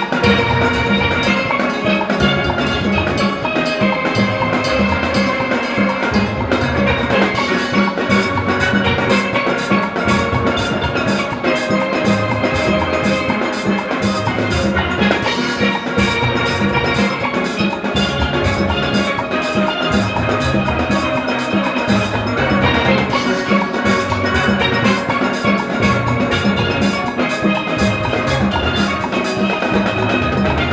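A full steel orchestra playing an arrangement: many steelpans, from high tenor pans down to bass pans, over a drum kit and percussion keeping a steady beat.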